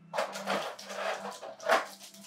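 Rustling and scraping of a jumbo Pokémon card being slid across a cloth playmat and picked up, uneven for about a second and a half, with a sharper rustle near the end.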